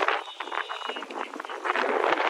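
Steady rushing wind and water noise on a moving motorboat.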